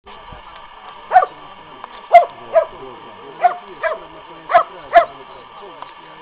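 Posavac hound (Posavski gonič) barking: seven loud barks, several in pairs about half a second apart, each dropping in pitch.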